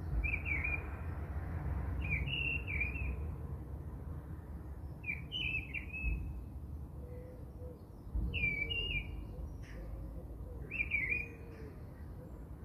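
A bird repeating the same short chirping phrase five times, one every two to three seconds, over a low steady rumble.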